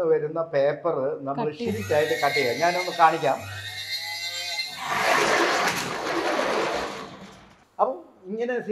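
Electric motor of a paper bag making machine, first a low steady hum, then running with a loud noisy whir for about two and a half seconds before cutting off.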